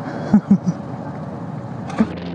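Steady engine and traffic noise from idling motorcycles and scooters waiting at a junction, with three short, loud low blips in quick succession about a third of a second in and a sharp click near the end.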